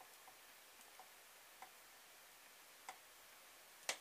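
Near silence: quiet room tone broken by a few faint, irregularly spaced clicks and one sharper click near the end.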